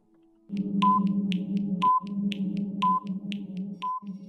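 Quiz countdown timer sound effect starting about half a second in: quick ticks about four a second and a short beep about once a second over a low electronic drone.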